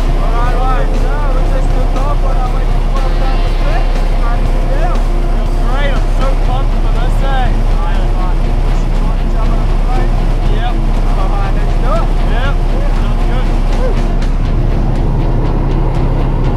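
Steady engine drone inside the cabin of a skydiving plane in flight, with indistinct voices over it.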